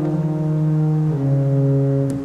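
1885 Hilborne L. Roosevelt pipe organ playing loud sustained low chords, the bass stepping down to a lower note about a second in.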